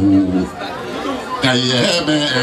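Speech: a voice in long, drawn-out phrases, two of them held for about half a second each, with chatter behind it.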